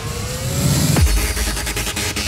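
UK hard house dance music at 150 BPM in a DJ mix. A rising sweep gives way to a deep falling swoop about a second in, and then the driving beat comes back in.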